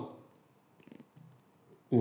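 Whiteboard marker on a whiteboard: a few faint short clicks and a brief thin squeak about a second in, just after a man's voice trails off.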